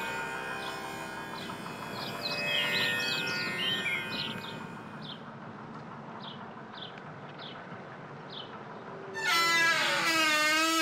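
Soft background music with faint held tones and a run of short, high, falling chirps that thin out to single chirps about every half second. About nine seconds in, a louder wavering note with vibrato comes in.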